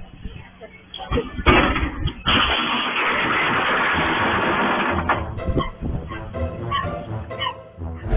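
A large metal gate toppling onto the pavement and knocking over a parked motorcycle: a couple of knocks, then a loud, noisy metal crash about two seconds in that lasts about three seconds.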